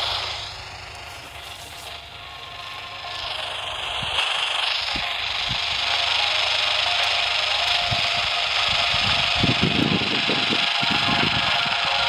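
Handheld portable FM radio hissing with static on a weak, fading signal from a homemade FM transmitter at the edge of its range. The hiss grows louder and steady after about three seconds, and some short low sounds come through near the end.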